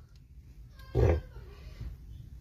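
A single short voice-like sound about a second in, over a faint low hum.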